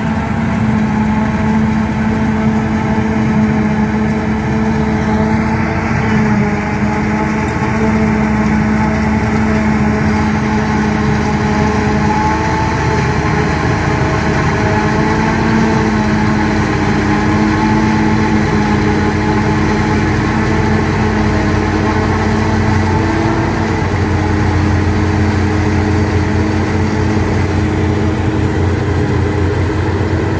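Claas Jaguar forage harvester running at a steady working speed while it cuts and chops standing maize, its engine drone mixed with the engine of the dump truck driving alongside to take the chopped crop. The sound is steady throughout.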